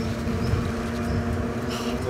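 Fat-tyre electric mountain bike riding along asphalt: a steady, even-pitched hum from the bike's motor and wide tyres, over a low wind rumble on the microphone.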